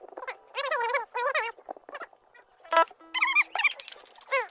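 A high-pitched voice making several short sounds that swoop up and down in pitch, not clear words, with a brief steady note a little after three seconds in.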